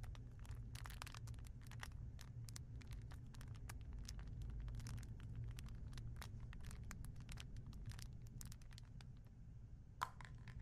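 Faint rustling of cloth and many small irregular clicks as a bow tie strap and its buckle are handled, over a steady low hum.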